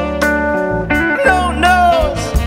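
A live rock band playing, with a lead guitar solo of bent, gliding notes over a sustained bass and a few sharp drum hits.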